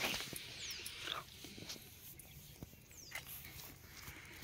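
A short animal call in the first second or so, then a quieter stretch with a few faint high chirps.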